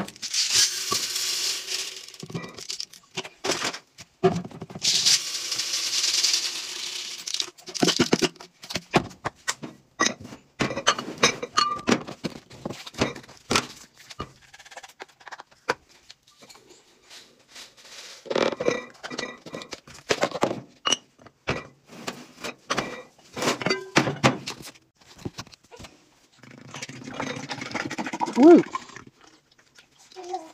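Laundry supplies being decanted into glass canisters: a dry laundry product poured into glass jars with a long hiss, twice early on, and glass lids and jars clinking and knocking throughout. Near the end, liquid laundry product glugs from a jug into a glass dispenser, the pitch rising as it fills.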